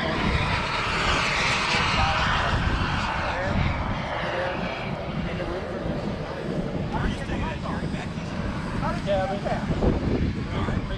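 Model jet turbine engine running at a distance, a steady hiss that is loudest in the first few seconds and then eases off, over a low rumble.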